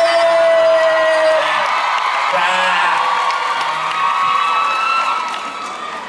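A crowd of fans screaming and cheering, with long high-pitched shrieks held over a steady din that eases slightly near the end.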